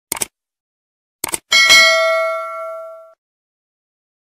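Subscribe-button sound effect: two quick double clicks about a second apart, then a bright notification-bell ding that rings with several pitches and fades away over about a second and a half.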